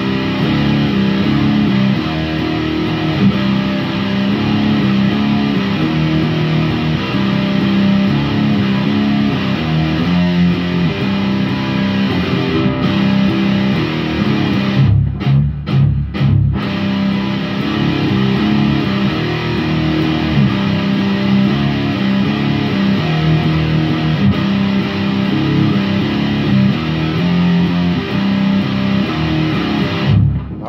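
Electric guitar playing a repeating riff, the loop being laid down on a looper pedal. There are a few short stops about halfway through.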